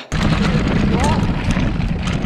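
Mountain bike running fast over a rough dirt trail: loud rumble and rattle of the tyres and frame over the ground, with a short rising whoop from the rider about a second in.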